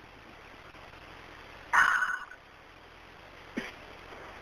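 Telephone-line hiss of a recorded 911 call, broken about two seconds in by one sudden loud burst of noise lasting about half a second, with a short faint sound near the end.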